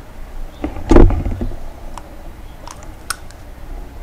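Handling sounds as the amber plastic lens is taken off a chrome turn-signal housing: one short thump about a second in, then a few faint clicks.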